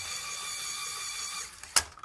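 A steady low hiss of background recording noise with a few thin steady tones, then a single sharp click near the end.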